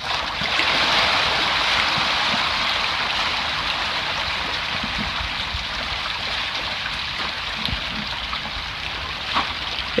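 African sharptooth catfish (Clarias gariepinus) thrashing and splashing at the surface of a tarpaulin pond in a feeding rush as feed is scattered onto the water. It is a dense, steady splashing that starts suddenly as the feed lands, is loudest about a second in, and slowly fades.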